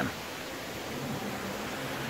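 Steady rushing hiss of water falling down an artificial rock waterfall into an indoor aquarium pool.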